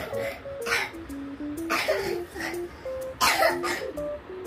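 Background music with a light plucked melody, with three short noisy bursts like coughs cutting across it, the loudest near the end.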